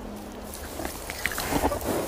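A horse snuffling and chewing as it takes grass from a hand. The sound is a cluster of short, noisy puffs and crunches, mostly in the second half.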